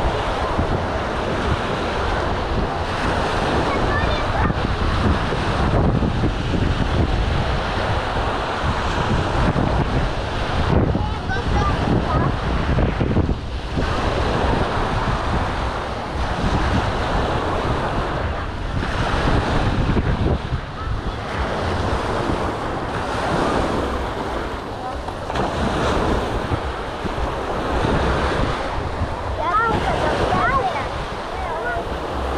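Small waves washing and breaking on a sandy beach, with wind buffeting the microphone as a steady rumble, and scattered voices of beachgoers.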